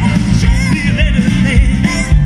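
Live band playing a rock-and-roll song: a man singing into a microphone over saxophone, electric guitars, bass and drums, loud through the stage sound system.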